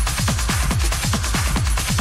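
Techno playing in a DJ mix: a fast, even run of pounding low drum hits, each dropping in pitch, under a steady hiss of hi-hats and cymbals.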